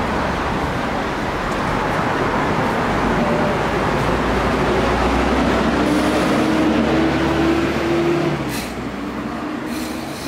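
Hyundai city bus pulling away from a stop, its engine note rising as it accelerates for about four seconds and then dropping away suddenly near the end, over steady street traffic.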